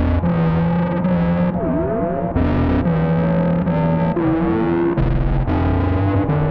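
Distorted synthesizer drone-jam: a sequence of low stepping bass notes, changing every half second to a second, under tones that sweep and glide up and down in pitch.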